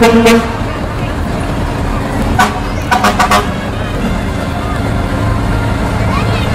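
A vintage fire engine's horn giving short toots: one at the start, another about two and a half seconds in, then a quick burst of three, over the steady rumble of the truck's engine.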